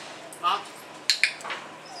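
Spitz puppy giving one short yip about half a second in, followed a moment later by a few sharp clicks.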